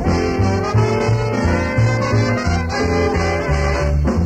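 Small jazz band playing an up-tempo swing number, a bass line walking in steady even notes under the ensemble. It is a 1960 live reel-to-reel tape recording.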